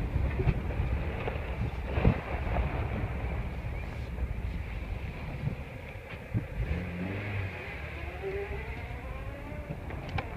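Car being driven slowly over a dirt and gravel lane, with the engine running at low revs, the tyres crunching and short knocks from the body. The engine is the 2003 Honda Accord's 2.4-litre four-cylinder. About seven seconds in, a whine rises in pitch for a couple of seconds as the car picks up speed.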